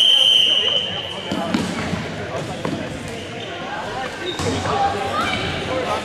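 A referee's whistle blows one long steady blast that stops about a second and a half in, followed by rubber dodgeballs bouncing on a gym floor among players' voices.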